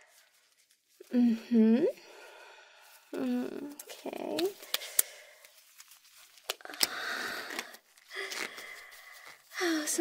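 A woman struggling to pull a tight glove onto her hand: the glove rustles and stretches, with a couple of sharp clicks. Under it she makes strained hums and short laughs.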